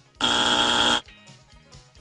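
Game-show buzzer sound effect: one harsh, steady buzz lasting just under a second, the Family Feud-style signal for a rejected answer.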